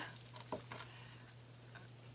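Faint patter and ticking of potting mix being added and pressed around a young African violet in a small pot by gloved fingers, with a small click about half a second in, over a steady low hum.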